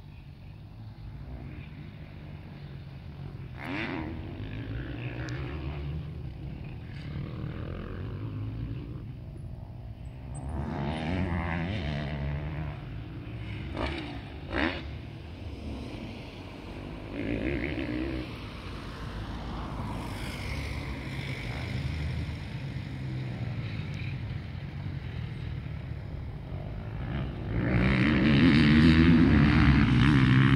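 Motocross motorcycle engines revving up and down in pitch as they ride, loudest near the end as one comes close.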